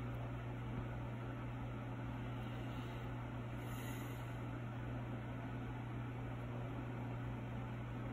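Steady low hum with an even faint hiss and no distinct sounds: constant background equipment or room noise while polish is brushed on.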